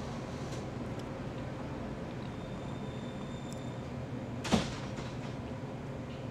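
Steady low room hum with a few faint clicks, then a single sharp knock about four and a half seconds in.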